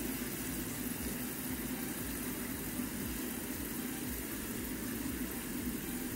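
Steady low hum and hiss from a lit gas burner under a pot of soy-sauce bistek sauce that has just come to a boil.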